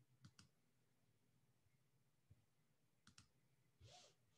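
Near silence: room tone broken by faint clicks, a quick double click near the start and another about three seconds in, with a short soft rustle at the very end.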